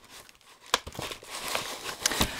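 Kraft paper envelope being opened and a plastic bag slid out of it, rustling and crinkling, with a sharp crackle under a second in.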